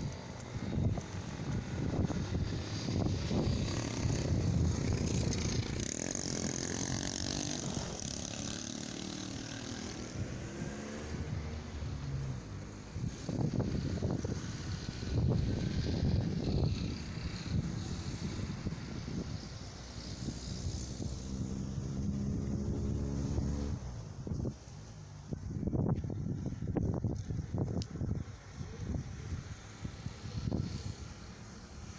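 Engines of vehicles passing on a street, their pitch rising and falling a couple of times over a steady low rumble.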